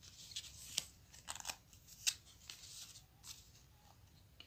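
Folded paper notes and a card being handled: faint, scattered crinkles and rustles of paper, a few short crackles a second.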